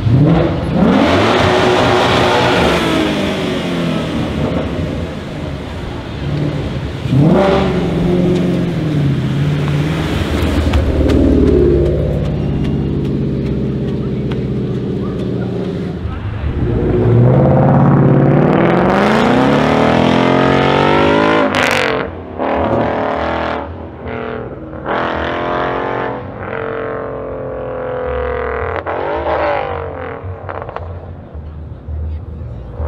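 Ford Mustang V8 engines revving hard and accelerating away, their pitch climbing in three long pulls. A single sharp crack comes about two-thirds of the way through. After it the engine sound turns lower and more uneven.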